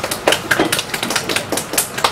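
Sparse applause: a few people clapping, with separate irregular claps several times a second.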